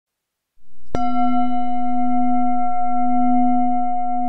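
A bell-like metal tone: a low hum swells up just after half a second, then a single strike about a second in sets off a loud ring with several high overtones that holds steady and slowly fades.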